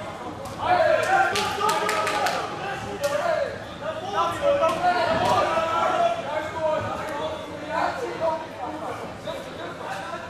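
Shouting voices echoing in a large hall over a ring fight, with a quick run of sharp smacks about one to two and a half seconds in and a few single ones later: gloves and kicks landing.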